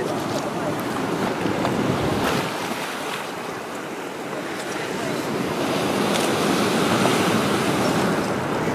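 Sea surf breaking and churning against a shore of dark lava boulders, a steady rushing wash that eases a few seconds in and builds again. There is wind on the microphone.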